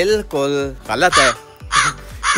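A man's voice speaking, with background music underneath.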